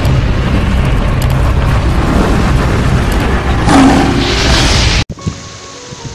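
Channel intro music with heavy rumbling and booming sound effects, loud and dense. It cuts off abruptly about five seconds in.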